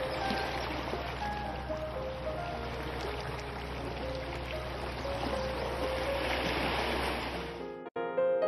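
Small waves washing over shoreline rocks, a steady rush of water, under soft background music with faint held notes. Both stop abruptly near the end.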